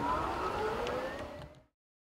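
Golf cart drive motor whining as the cart pulls away, its pitch rising steadily as it speeds up, then cut off abruptly.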